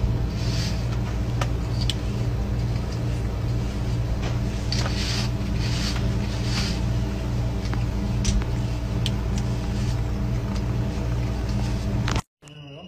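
A steady low electrical hum with several even overtones, like a small mains-powered motor or fan running, with short hissy sounds coming and going every second or so and a few light clicks.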